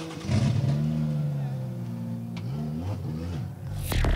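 Drift car engine revving, its pitch rising soon after the start, holding, then dipping and climbing again near the end.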